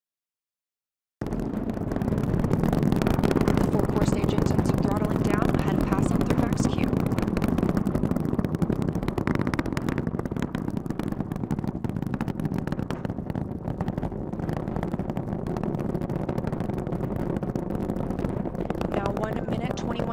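Space Launch System rocket in ascent, its four RS-25 core-stage engines and two solid rocket boosters firing: a heavy, crackling roar that cuts in abruptly about a second in and carries on steadily.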